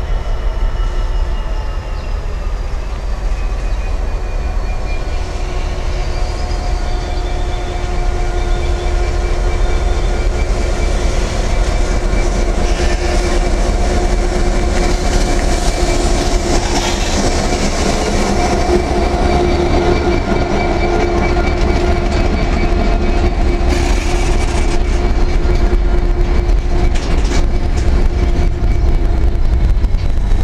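Class 66 diesel-electric locomotive 66525 approaching and passing close by under power, its EMD two-stroke V12 engine running with a steady hum of several tones, loudest about halfway through as the cab goes by. Container wagons then roll past, with wheel clicks over the rail joints in the last few seconds.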